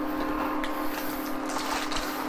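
Steady hum of a portable induction cooktop, its cooling fan running with a low tone and a fainter higher whine, as it heats a cast iron skillet of oil. Faint handling ticks sound over it.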